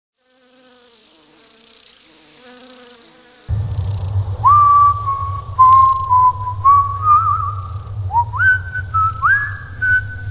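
Eerie whistle-like tones that slide up in pitch and then hold, again and again in a slow gliding tune, over a steady low hum. Both start suddenly about three and a half seconds in, after a few faint tones.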